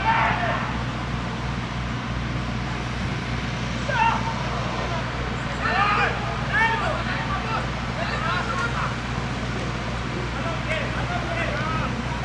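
Live pitch-side sound of a football match: short shouts from players and coaches ring out several times over a steady low hum of stadium ambience.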